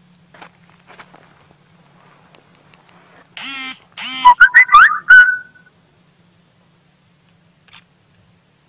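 Automatic grenade launcher firing a short burst: several loud, heavily distorted shots between about three and a half and five seconds in.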